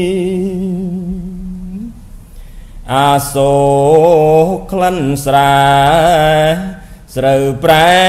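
Khmer smot chanting by a solo male monk's voice, holding long, slow notes ornamented with wavering turns. A held note fades out about two seconds in, then after a short breath the chant resumes just before three seconds and pauses briefly near seven seconds.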